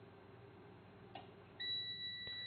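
SunGoldPower 3000 W inverter charger giving a steady high beep, starting a little past halfway, as over-voltage on its input makes it switch over to battery power. A faint click comes about half a second before the beep.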